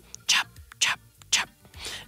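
A person whispering: three short hissing, breathy syllables about half a second apart, with no voiced sound between them.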